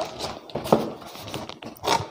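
Cardboard box and plastic wrapping being handled: irregular rustling and scraping with a few short knocks, the loudest near the end.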